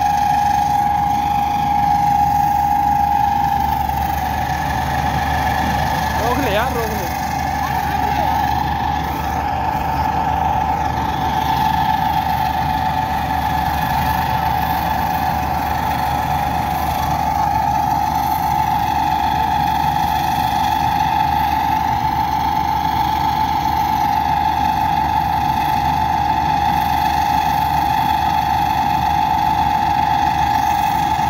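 Combine harvester running steadily as it cuts paddy: a continuous engine drone under a steady high whine from the machine. A brief wavering sound rises over it about six seconds in.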